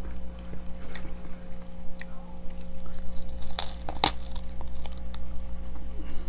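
Freezer frost crackling and crunching in scattered sharp clicks, the loudest a little after three and a half and about four seconds in, over a steady low hum.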